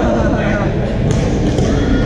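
Badminton rally: a few sharp racket-on-shuttlecock hits and thuds of players' shoes on the hard gym floor, over a steady babble of voices in a large hall.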